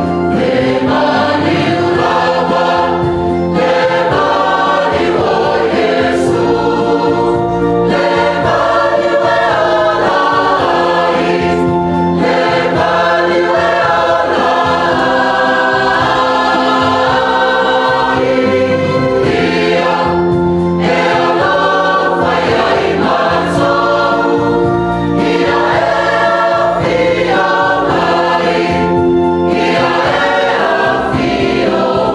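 A large church choir singing a gospel hymn together, with many voices in harmony.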